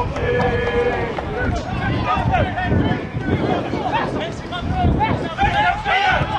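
Several voices overlapping, some drawn-out calls among them, from players and spectators shouting across an outdoor football pitch, over a low outdoor rumble.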